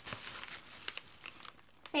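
Thin plastic shopping bag crinkling and rustling as hands rummage through it, with irregular crackles for about the first second and a half before it quiets.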